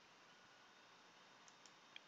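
Near silence: faint room hiss with a few soft computer mouse clicks in the second half.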